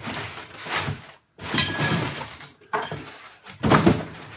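Rummaging through a cardboard box for assembly parts: several irregular bursts of cardboard and packing scraping and rustling, with a louder knock near the end.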